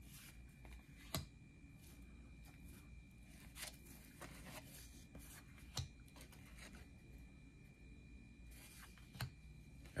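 Near silence broken by faint, scattered flicks and rustles of 1988 Donruss baseball cards being picked up and laid down by hand: a few soft clicks about a second in, near four seconds, near six and near nine.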